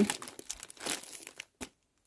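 Thin plastic bread-roll bag crinkling in irregular rustles as it is gripped and handled.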